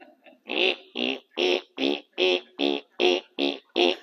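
A man making rhythmic mouth sound effects into a microphone: nine short, even vocal strokes at about two and a half a second, mimicking work done with hand tools rather than power saws and nailers.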